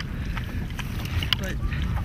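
Wind rumbling on the microphone over rippling water, with a few short, sharp splashes.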